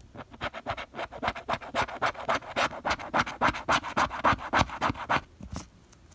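A plastic scratcher tool scraping the coating off a scratch-off lottery ticket in rapid, even back-and-forth strokes, uncovering the hidden numbers. The strokes stop about five seconds in, followed by a couple of single scrapes.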